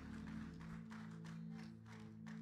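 Soft live band music: a quiet held chord that sits steady in the low-middle range, as the wash of the drum kit's cymbals dies away at the start. There are a few faint light strokes over it.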